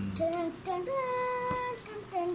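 A child's voice singing a short melody of brief notes, with one long held note about halfway through. A single light click sounds near the middle.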